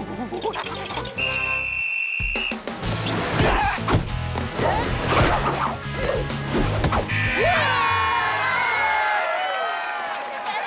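Cartoon soundtrack of a volleyball game: music with a long, steady, high whistle blast about a second in and sharp smacks of the ball being hit. Excited wavering voices come in over the last few seconds.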